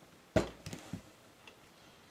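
A large rubber stamp pressed down onto watercolor paper lying on a bath tile. One sharp knock comes about a third of a second in, followed by two fainter knocks.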